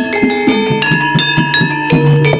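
Live Javanese gamelan music for a jaranan dance: struck metal keys and gongs ring out a quick run of notes over regular drum strokes, played through a sound system.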